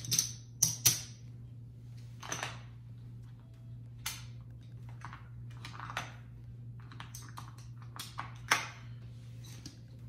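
Casino chips clicking against one another as a hand picks them up, stacks them and sets them down on a craps table layout: scattered, irregular sharp clicks, the loudest just after the start and about eight and a half seconds in.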